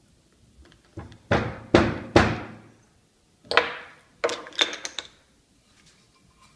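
Wooden knocks and thuds in two clusters: four sharp knocks between about one and two and a half seconds in, then a looser run of smaller knocks from about three and a half to five seconds in. They come from a split chestnut log and its wooden centring rings being handled against a wooden workbench.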